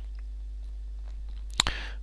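A low, steady electrical hum in the recording. About one and a half seconds in, a single sharp click is followed by a short breath in.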